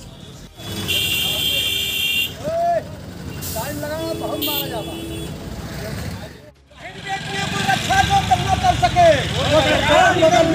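Road traffic rumble with a vehicle horn sounding for about a second and a half near the start and again briefly around the middle, amid scattered men's voices. After a sudden drop about six and a half seconds in, several men's voices over the traffic noise.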